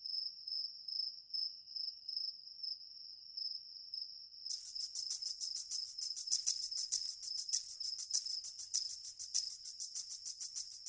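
Crickets chirping: a steady, high pulsing trill, joined about four and a half seconds in by a louder, faster run of chirps.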